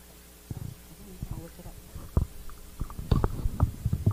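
Handheld microphone handling noise: irregular low bumps, knocks and rubbing as the mic is handled and passed over, getting louder and more frequent in the last second or so.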